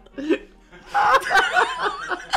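Hard laughter: a short gasping breath, then from about a second in loud, high-pitched laughter with a wavering pitch.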